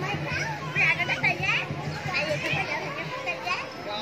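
Children's voices chattering and calling out, with a steady low hum underneath that fades out near the end.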